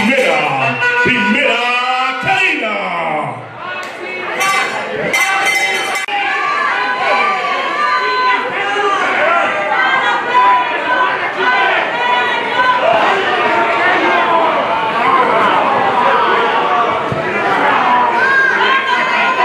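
Wrestling crowd in a hall shouting and chattering, many voices overlapping, with one loud voice standing out in the first three seconds and a few sharp claps about four to six seconds in.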